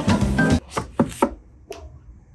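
Organ music that stops abruptly about half a second in, followed by several light, separate knocks and taps of books and a plastic honey bottle being handled on a wooden bookshelf.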